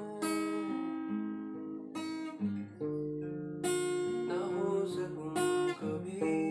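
Steel-string acoustic guitar with a capo, strummed a few times with each chord left to ring: an F chord moving to G near the end.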